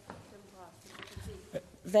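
Faint off-microphone voices and quiet room tone in a debating chamber, then a man starts speaking near the end.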